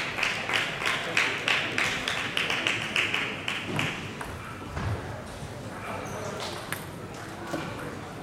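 Spectators clapping in unison, at about four claps a second, in a large hall; the clapping stops about four seconds in, leaving crowd murmur and a couple of sharp taps.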